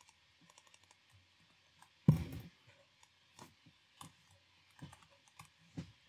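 Typing on a computer keyboard: a run of separate keystroke clicks, with one much louder knock about two seconds in.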